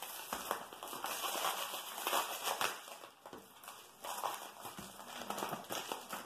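Thin clear plastic bag crinkling as it is pulled off a foam handlebar pad and crumpled in the hands, with a brief lull about three seconds in.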